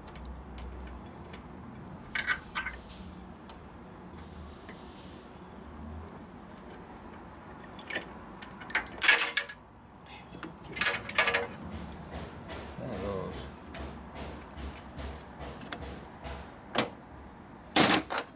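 Steel and friction clutch plates clinking and scraping on the hub studs of a motorcycle's belt-drive clutch as they are worked on and off by hand. Scattered sharp metallic clicks come in small clusters, the loudest about nine seconds in and again near the end.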